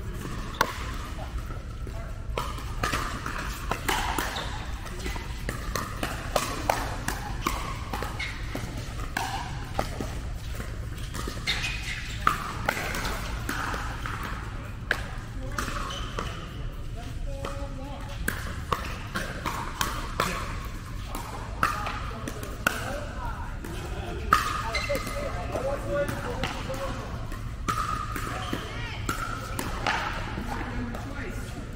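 Pickleball rally: the plastic ball popping off paddles and bouncing on the court, sharp irregular pops a second or so apart, with indistinct voices and a low steady hum behind.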